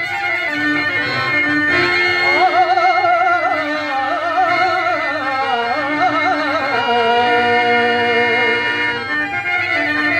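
A male voice singing a Telugu padyam verse in long, ornamented phrases that waver and glide in pitch. A harmonium holds steady tones beneath, and a clarinet accompanies.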